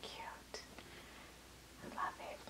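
Quiet, breathy whispering from a woman's voice, with a light click about half a second in.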